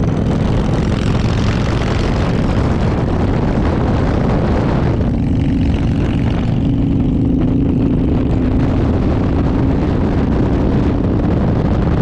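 Motorcycle engine running at road speed, buried in heavy wind noise on the microphone. About five seconds in the wind eases for a few seconds and a steady engine hum comes through more plainly.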